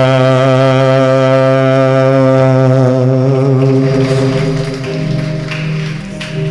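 Telugu Christian worship song: a man's voice holds one long sung note over instrumental accompaniment. The note fades about four seconds in, and the accompaniment carries on.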